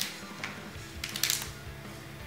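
Quiet background music, with two brief crinkles of plastic packaging being handled, about half a second and a second and a quarter in.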